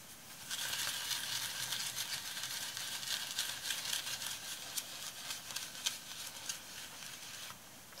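Paper tissue rubbed over a crackle-textured canvas, a dry scratchy rustling full of small scrapes, wiping excess dark pigment off the surface so that it stays in the cracks. It starts about half a second in and stops just before the end.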